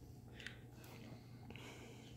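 Near silence: room tone with a steady low hum and a faint click about half a second in.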